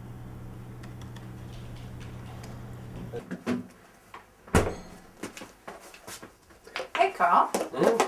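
A steady low hum of room tone, then a fridge door is opened in a kitchen, with a sharp knock and clatter from the door and plastic food containers. Brief voice sounds come near the end.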